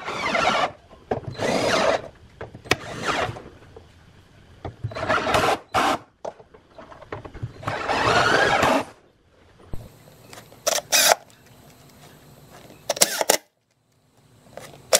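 A 36 V cordless drill driving screws to fasten an 18-inch subwoofer driver's frame into a wooden cabinet, in about five short bursts in the first nine seconds, then two shorter bursts near the end.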